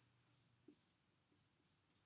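Faint strokes of a dry-erase marker on a whiteboard, a few short, soft squeaks spread over two seconds.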